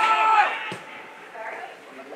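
Spectators shouting from the sideline, loud for the first half second and then dropping away to quieter distant voices. One sharp knock sounds a little under a second in.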